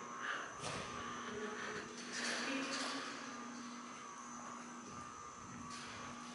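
Quiet room tone: a steady low hum with a few faint, soft scuffs.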